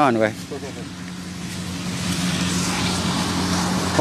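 A motor vehicle's engine running at a steady pitch, its hum and road noise growing gradually louder over the last three seconds as it approaches.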